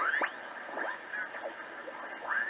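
Receive audio from a BITX40 single-sideband transceiver on 40 metres as its tuning knob is turned: off-tune voices of stations sweep up and down in pitch, several times.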